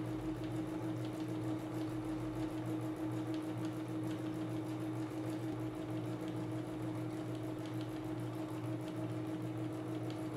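Domestic electric sewing machine running at a steady speed with an even hum. It is free-motion quilting a meandering stitch through a cotton top, batting and backing, with the feed guided by hand under a round free-motion foot.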